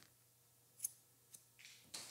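Hair-cutting shears closing once through a held section of wet hair: a single short, sharp snip about a second in, followed by a few faint clicks.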